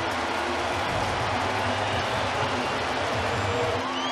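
Ballpark crowd cheering steadily after a home run.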